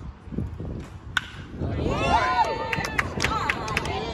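A bat strikes a baseball with one sharp crack about a second in. Spectators then shout and cheer as the ball is put in play.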